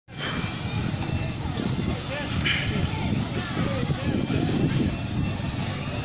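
Outdoor ambience: indistinct voices of people nearby over a steady low rumble.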